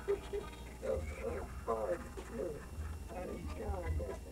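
People talking quietly, too faint to make out words, over a low steady rumble.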